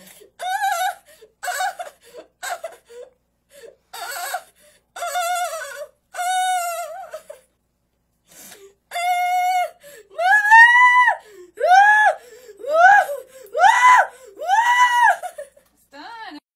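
A girl whimpering and sobbing in fear and pain as a needle draws blood from her arm, then breaking into a run of loud, high wails, each rising and falling, about one a second.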